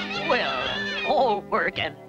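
Several high-pitched cartoon voices giggling together over background music, with a man's voice beginning to speak near the end.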